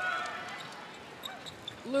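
Indoor netball court sounds: a few brief shoe squeaks on the wooden floor over the steady background noise of the arena.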